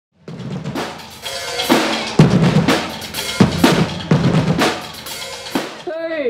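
A drumline playing snare and bass drums: a busy pattern of hits with heavy bass-drum accents landing every half second to second or so.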